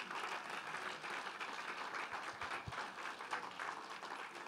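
Congregation applauding: a dense, steady patter of many hands clapping. A few soft low thuds come about halfway through.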